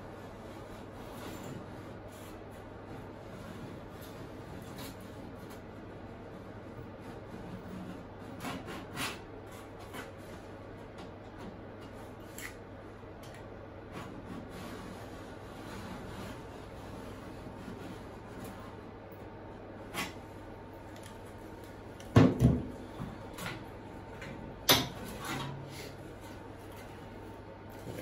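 A knife tip scratching a marking line into the steel door panel: faint scraping with scattered small clicks. Two louder metallic knocks come late on, as the tool or panel is handled.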